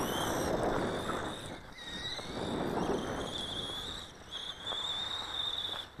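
Dromida DB4.18 1/18-scale electric RC buggy driving, its drivetrain giving the high-pitched squeal this buggy makes. The squeal rises in pitch in the first half second, then holds as a steady high whine through the second half, over a rough rushing noise.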